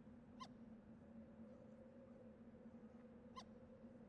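Near silence with a faint steady hum, broken twice by a short, high animal call about three seconds apart.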